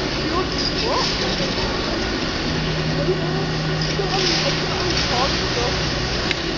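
Steady rushing noise of skis sliding over the artificial snow of an indoor slope, with air moving past the microphone as the skier goes downhill.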